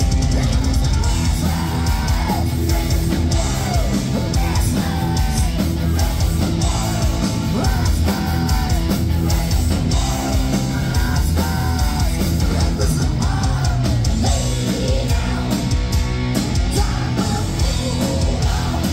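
Heavy metal band playing live at full volume: distorted electric guitars, bass and drums, with a singer's voice carrying a repeated melodic line over them.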